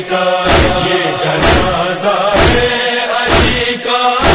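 Mourners' voices chanting an Urdu noha lamenting Shabbir (Imam Husain), with a sharp slap about once a second in time with the chant, typical of matam chest-beating.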